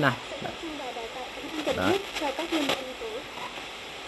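Retro-style NNS NS-8898BT portable radio hissing with static through its speaker as the tuning knob is turned across the FM band, with faint, broken snatches of broadcast voices fading in and out: the set is searching between stations.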